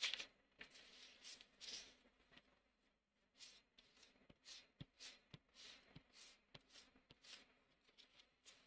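Kneaded eraser rubbed over sketchbook paper to lift the pencil lines: faint, papery rustling strokes, about two a second in the second half.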